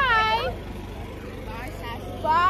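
A girl's high-pitched call or shout, rising then falling in pitch, in the first half second. After it a low steady hum continues under faint background voices.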